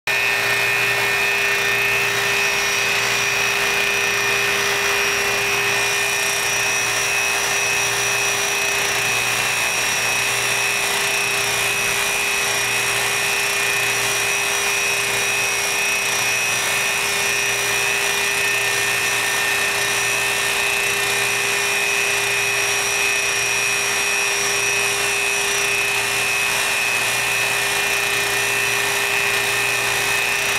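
Ultrasonic probe's heterodyned output from an earthing stud: a steady electrical hum made of several constant tones over a hiss, with a faint slow pulsing underneath.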